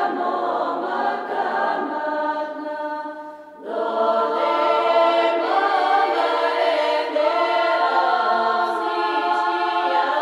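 Bulgarian women's folk choir singing a cappella, many voices holding long notes together. The singing thins and fades briefly a little over three seconds in, then comes back fuller and louder.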